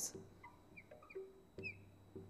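Marker tip squeaking on a glass lightboard while writing, a series of short faint squeaks.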